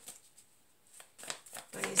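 A deck of tarot cards being shuffled by hand: after a short lull, a few sharp card slaps and flicks about a second in.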